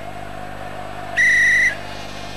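A referee's whistle: one short, steady blast of about half a second, a little past the middle.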